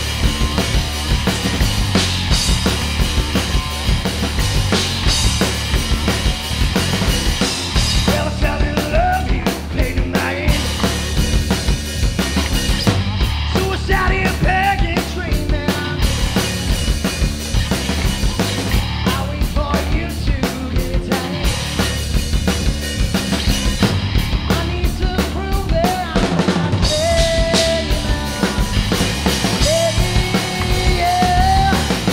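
Live rock band playing, heard from just behind the drum kit: rapid bass drum and snare hits and cymbals dominate. Electric guitar and bass guitar sit underneath, and a pitched melodic line comes and goes over them.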